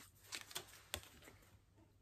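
Near quiet, with a few faint clicks and rustles of a pack of affirmation cards being opened and a card drawn out by hand, the sharpest about a second in.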